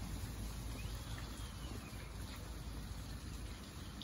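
Steady wet-weather outdoor hiss from rain-soaked ground and water running along the pavement, with a faint short whistle about a second in.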